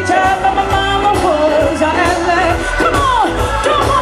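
Live blues band: a woman singing held, wavering notes over electric guitar, bass and a steady drum beat, with notes sliding down in pitch a few seconds in.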